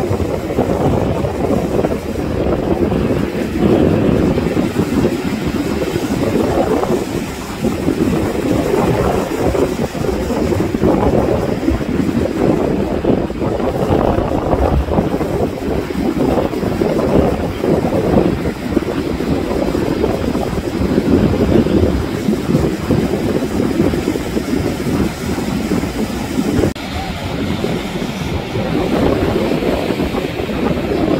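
Wind rumbling on the microphone over the sound of surf breaking on the shore: a loud, continuous, unsteady roar.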